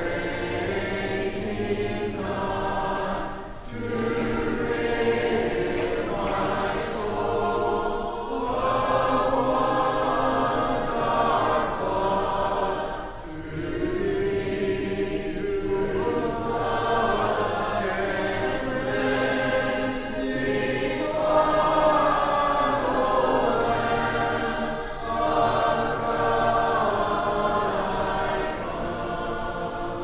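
A congregation singing a hymn together as the invitation hymn after the sermon, in sustained lines with short breaks between them.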